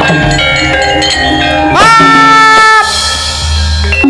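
Javanese gamelan playing: many short struck metallophone notes, and about two seconds in a louder held note that slides up into pitch and lasts about a second.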